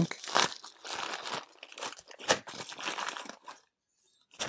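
Plastic packaging crinkling as a padded poly bubble mailer is rummaged and a zip-lock bag of ribbon connectors is pulled out of it, with a sharper crackle about two seconds in. The rustling dies away shortly before the end.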